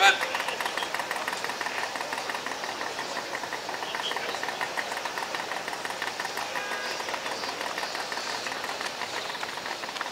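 Small portable fire pump engine running steadily at high speed while pumping, with a fast, even ticking rattle. A short loud voice burst comes right at the start.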